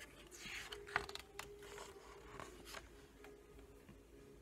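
Page of a large picture book being turned by hand: a faint paper swish, then a couple of light taps about a second in.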